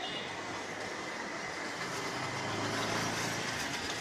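Street traffic noise with a motor vehicle engine running, its low hum growing louder in the second half.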